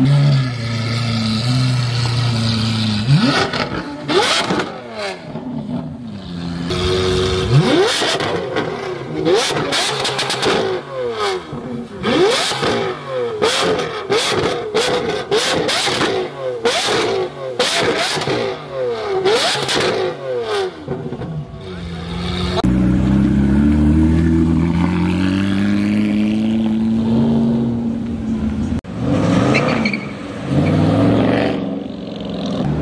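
Lamborghini Aventador SVJ's naturally aspirated V12 idling, then revved again and again in quick blips for about twenty seconds. For the last several seconds a smoother engine note swells and fades as a car pulls away.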